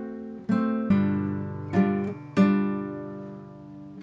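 Nylon-string classical guitar strummed on a D7 (D with a seventh) chord, four strums in a row, each left to ring out and fade.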